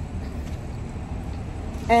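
Street ambience in a pause between words: a steady low rumble of road traffic.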